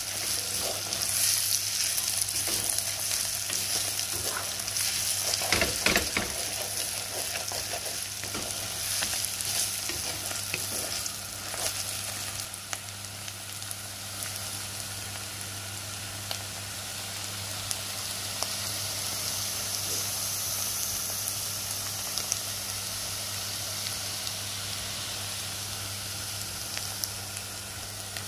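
Shredded beetroot frying and sizzling in oil in a clay pot while a wooden spoon stirs it, with a few louder scrapes and knocks of the spoon about six seconds in. A steady low hum runs underneath.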